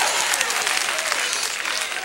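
Church congregation applauding after the preacher's shout, with a few voices calling out; the applause fades away over the two seconds.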